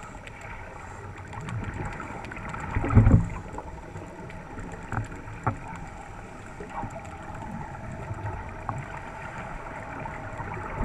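Underwater sound picked up through a camera housing on a scuba dive: a steady low rumble with scattered faint clicks. About three seconds in comes a short, loud gurgle of the diver's exhaled regulator bubbles.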